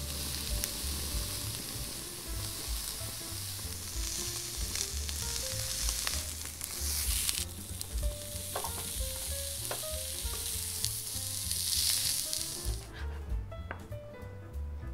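Pepper-crusted block of tuna searing in a hot pan: a steady fat sizzle as only its surface is browned for tadaki. It swells louder twice, and it stops shortly before the end.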